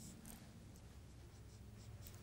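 Faint marker strokes on a whiteboard, a few short scratches over a low steady room hum.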